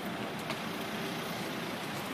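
Steady road-traffic noise from vehicles running nearby, with a faint tick about half a second in.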